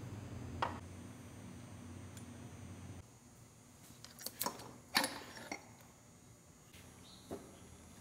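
Metal clinks and knocks from a tractor engine's oil pump and a wrench being worked loose and lifted off the engine block: a single click early, then a cluster of sharper clinks between about four and five and a half seconds in, the loudest near five seconds, and one more near the end. A steady low hum stops about three seconds in.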